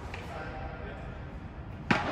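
Padel racket striking the ball once near the end, a sharp pop that rings on in the reverberant indoor hall, with faint voices before it.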